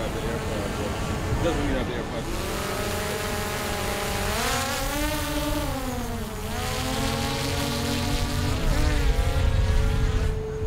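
Camera drone's propellers whining overhead, the pitch swelling up and then sliding down about halfway through as it manoeuvres, over a low rumble of wind on the microphone.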